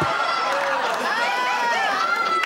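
Audience laughing together after a punchline: a steady wash of many voices at once.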